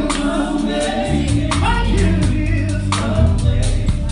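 Southern gospel quartet singing live in harmony over loud instrumental accompaniment with a strong bass and sharp repeated hits, heard from the stage.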